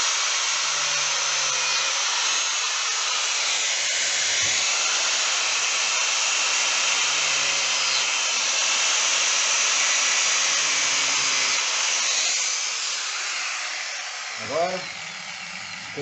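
Electric angle grinder with a thin cutting disc running steadily while cutting into a cast garden-ornament heron piece; the sound fades away over the last few seconds as the cut is finished.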